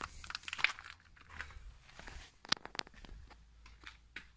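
Rustling and scattered light clicks from a hand-held phone being carried while walking, with a sharper cluster of clicks about two and a half seconds in.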